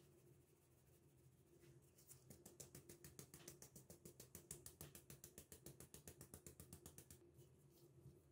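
Faint, quick, even rattling from a handheld stainless mesh sieve being shaken to sift flour and cornstarch, about ten strokes a second. It starts about two seconds in and stops about seven seconds in.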